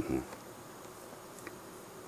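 A man's brief 'mm', then quiet room tone with a faint steady hum and a tiny click about a second and a half in.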